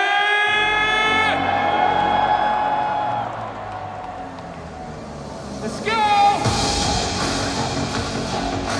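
A man's voice over a stadium PA holds a long shouted note, with backing music and a deep bass coming in about half a second in. A second shout comes about six seconds in, and then the music turns louder and brighter.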